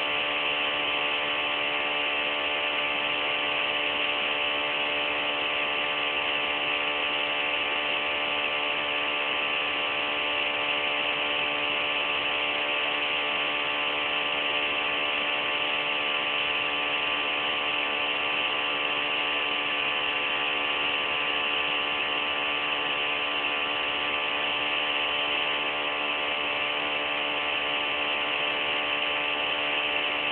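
Bedini SSG pulse motor's magnet rotor spinning at a steady, low speed, a constant whir of fixed pitch. It is pulse-charging a cellphone battery, deliberately run below full speed for a slow charge.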